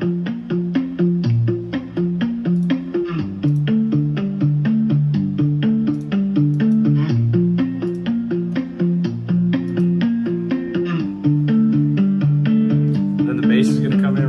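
Playback of a looped, programmed guitar arrangement from virtual guitar instruments: a repeating plucked melody with a muted-string guitar part, as the main guitar fades in under a volume automation. It gets louder about three seconds in and again near eleven seconds.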